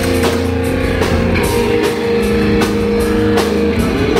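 Live rock band playing: a held chord from electric guitar and keytar over drums, with the held notes cutting off shortly before the end.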